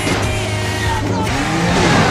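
A jet ski engine running and revving, its pitch rising and falling from about a second in, mixed with background music.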